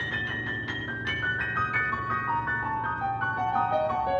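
Grand piano played alone, a quick run of high notes stepping steadily downward in pitch.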